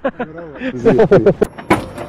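A group of men laughing in quick, short ha-ha pulses, loudest about a second in, followed by a sharp knock near the end.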